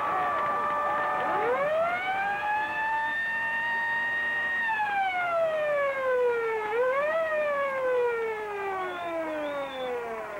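A siren winds up steeply over about a second, holds a steady wail, then winds slowly down, rising again briefly about seven seconds in before falling away.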